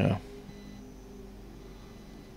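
A man's brief "yeah", then a low, steady hum made of several steady tones, with no other event.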